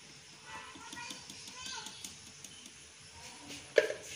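Faint voices in the background, then a single sharp clink near the end as a metal spoon strikes the steel mixing bowl.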